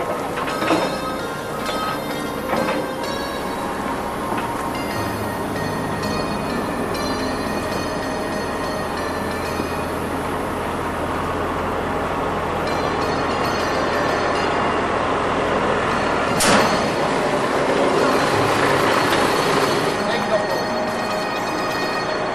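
A bin trailer's hydraulic tilting deck, driven by the truck's wet-kit pump, steadily lifting a steel hopper-bottom grain bin, with scattered creaks and knocks from the chains and bin frame. A sharper clank comes about three-quarters of the way through.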